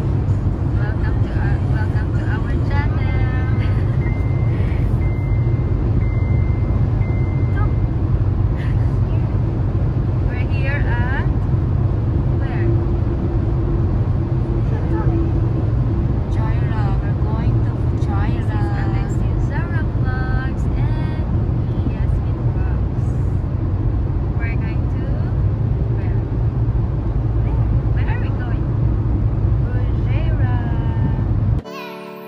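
Steady low road and engine rumble inside a car's cabin at highway speed, with voices talking now and then over it.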